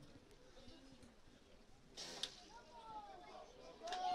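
Quiet outdoor ambience with one short strike of a rugby ball in a penalty place-kick at goal about halfway through. A steady tone starts just before the end.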